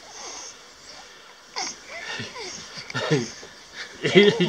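Short breathy vocal sounds and wheezy breaths close to the microphone: a hissy breath at the start, then from about a second and a half in a string of brief sounds, each sliding down in pitch.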